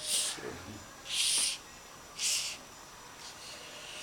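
Pen scratching across a card in three short strokes about a second apart, as a letter is written.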